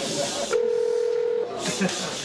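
Telephone ringback tone of an outgoing call: one steady tone just under a second long, a little way in, with the audience murmuring behind it.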